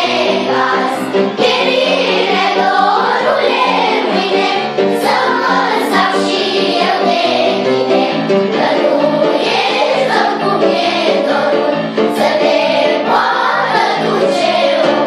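A children's choir singing a song, many young voices together, at a steady level throughout.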